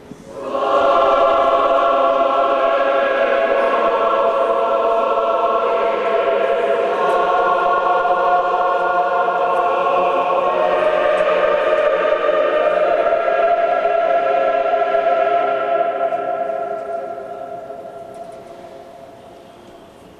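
Orthodox church choir singing a slow liturgical chant in long held chords, the notes changing a few times before the singing fades away about sixteen seconds in.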